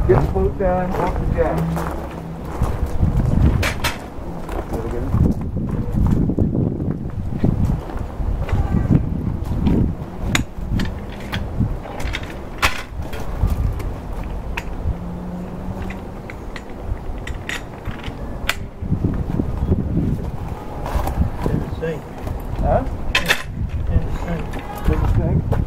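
Scattered knocks and clanks from hands and a metal bar working at a jacked-up boat trailer, over a steady low rumble of wind on the microphone.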